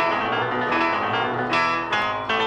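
Instrumental karaoke backing track playing its intro, led by keyboard, with no vocal line.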